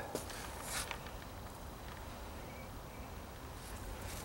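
Quiet outdoor background noise with a couple of faint clicks near the start; no machine is running.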